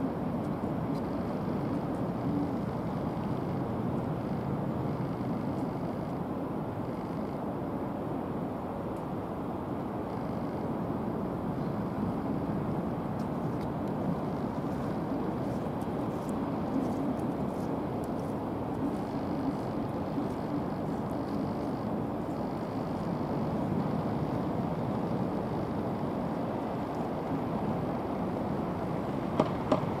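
Rough sea surf breaking against a concrete tetrapod breakwater and on a pebble shore: a steady, unbroken rush of crashing waves. Two short clicks near the end.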